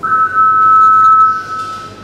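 Competition attempt clock's warning signal: a steady electronic tone of two close pitches, held for about a second and a half, then fading. It marks 30 seconds left for the lifter to start the lift.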